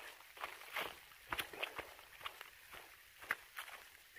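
Faint, irregular footsteps of a hiker walking a leaf-littered woodland trail, with soft rustling of a plastic rain poncho.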